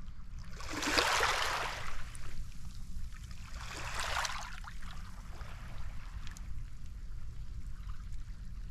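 Small sea waves lapping and washing over a pebble shore, with a louder wash about a second in and a shorter one around four seconds, over a steady low rumble.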